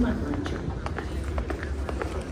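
Quick footsteps of someone hurrying across a hard station floor, about four steps a second, over a low rumble of the moving microphone.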